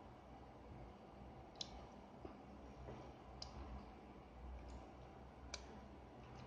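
A metal spoon clicking faintly against a ceramic mug while eating, a handful of short sharp clicks about a second apart over quiet room tone.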